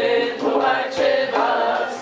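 A group of voices singing a Persian tasnif together, accompanied by plucked tars and tombak goblet drums, with sharp drum strokes cutting through the singing a few times.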